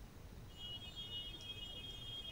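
Near silence with a faint, high, steady electronic tone that comes in about half a second in and holds, slightly broken, over a low hum.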